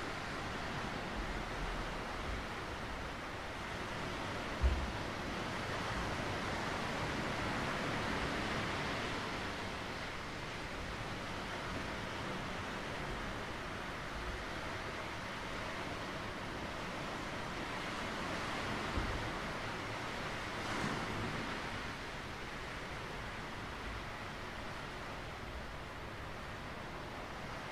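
Surf washing onto a rocky shore: a steady hiss of breaking waves that swells twice and eases off. A few brief low thumps of wind on the microphone.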